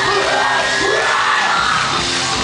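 Live pop-punk band playing loudly through a venue PA, lead vocals over guitars and drums, with the crowd yelling along.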